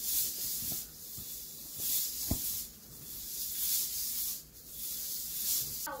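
Hula hoop swishing as it circles the body, a hissing swoosh about once a second, with one short knock a little over two seconds in.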